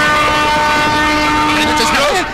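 Diesel locomotive's air horn sounding one long chord-like blast that cuts off near the end, with a low engine rumble beneath.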